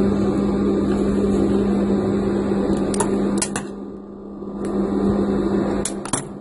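Industrial lockstitch sewing machine running and stitching a dart, a steady motor hum that dips quieter about four seconds in and then picks up again, with a few light clicks.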